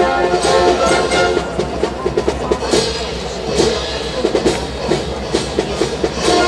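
A live brass band playing march music, with a steady drum beat standing out over softer brass.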